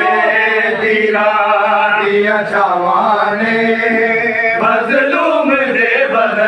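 A group of men chanting a Muharram noha (mourning lament) in unison, a continuous loud sung refrain.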